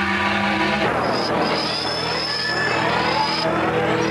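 Electronic opening theme of a TV programme: held synthesizer notes, then from about a second in a dense wash of swooping rising and falling electronic glides under a steady high whistle.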